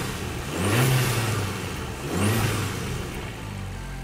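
Abarth 695 Tributo 131 Rally's 1.4-litre four-cylinder turbo engine running with its Record Monza exhaust in Scorpion mode, revved twice in short blips that rise and fall back to idle.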